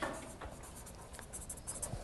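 Faint scratching of writing on a board as the word 'suppress' is written out, with light ticks and strokes in the second half.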